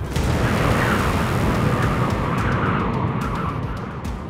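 Storm wind rushing, a blizzard sound effect for an animated cartoon. It starts suddenly and eases slightly toward the end.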